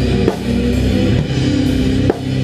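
Rock band playing instrumentally: electric guitar and bass guitar holding sustained chords over a drum kit, with sharp drum and cymbal hits about once a second.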